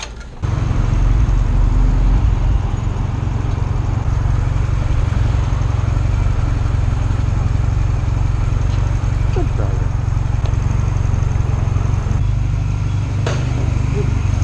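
Honda Rebel motorcycle engine running with a steady low rumble, cutting in abruptly about half a second in.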